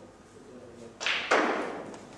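Two sharp knocks about a third of a second apart, the second louder, each followed by a short ringing tail in a large room.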